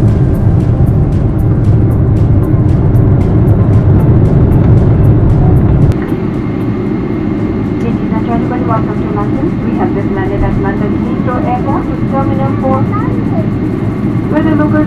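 Cabin noise of a Boeing 777 on its landing rollout: a loud, low rumble that drops off sharply about six seconds in as the aircraft slows and turns off the runway. A voice over the cabin speakers starts a few seconds later.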